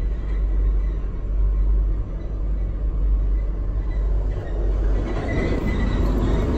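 Eurotunnel shuttle train running through the Channel Tunnel, heard from inside a car carried aboard: a steady, deep rumble.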